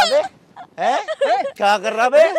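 A person crying out in distress: a string of loud, high-pitched, wavering wails that break off briefly about a third of a second in and then come again several times.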